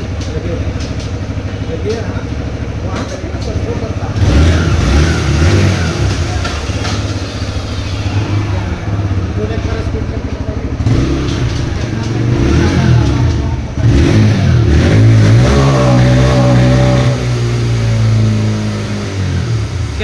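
TVS Raider 125's single-cylinder engine idling, with the throttle blipped several times so the revs rise and fall back, the longest rev near the end.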